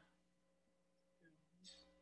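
Near silence: a pause between phrases of speech on a video call.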